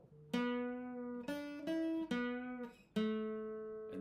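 Dreadnought acoustic guitar playing a slow single-note lead line: a string plucked about a third of a second in, its pitch stepping up twice without a new pluck and dropping back about two seconds in, then another note plucked near three seconds, each ringing out and fading.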